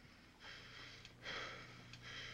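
A man's faint, tense breathing: two breaths about half a second and a second and a quarter in, over a low steady hum.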